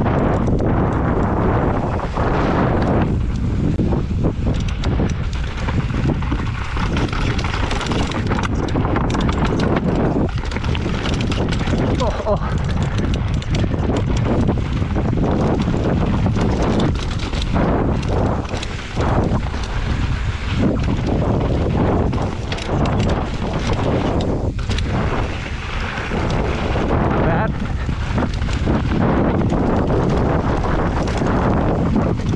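Mountain bike riding fast down a rocky dirt trail, heard from a bike- or rider-mounted action camera. The airflow makes loud, continuous wind buffeting on the microphone, and under it the tyres crunch over dirt and stones and the bike clatters and knocks irregularly over the rough ground.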